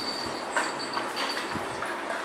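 Small dogs' claws clicking and scrabbling on a hard tiled floor as they run about, with a few sharp clicks, the loudest about half a second in, over a steady hiss and a faint high whine that comes and goes.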